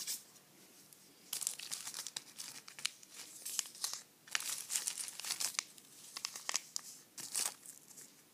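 Small paper NeilMed Sinus Rinse salt sachets crinkling and rustling as fingers handle and rub them. The crackling starts about a second in and comes in close runs, with a short pause near the middle and another near the end.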